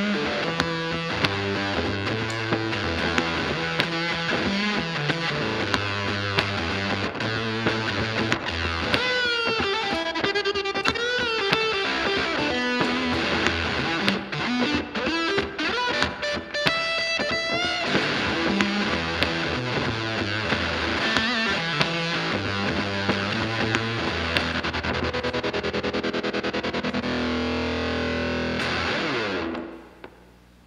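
Semi-hollowbody electric guitar played solo through an amp with distortion: riffing grooves with wavering bent notes in the middle, stopping just before the end.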